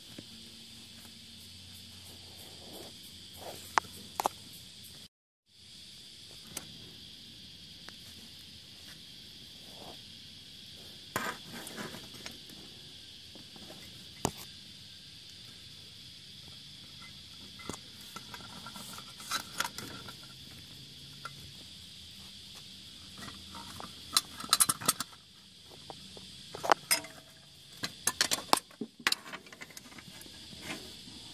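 A steady, high-pitched chorus of insects. It cuts out for a moment about five seconds in, and sharp clicks and light knocks break in now and then, most of them near the end.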